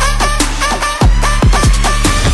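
Electronic dubstep-style track: deep kick drums that drop in pitch, over a steady low bass line, with short repeated synth stabs.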